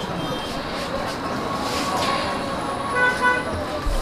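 Street traffic noise with a vehicle horn honking briefly about three seconds in.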